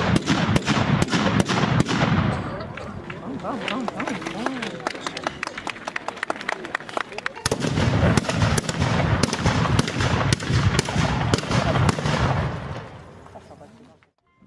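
Many Japanese matchlock muskets (tanegashima) firing in rapid, overlapping succession, a dense crackle of sharp reports with a deep boom under them. It comes in two stretches, one over the first two seconds or so and one from about seven seconds in, and the second dies away near the end.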